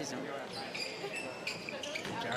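Basketball court sounds under the low hum of an indoor hall, with one steady high-pitched squeal about a second long, starting a little before halfway.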